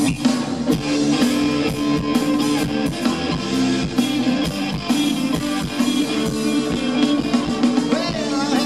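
Live rock band playing an instrumental passage: electric guitars over a drum kit keeping a steady beat.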